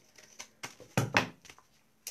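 Handling noise from a paper-wrapped tin can and a pair of scissors: a few light knocks and taps, the loudest two close together about a second in.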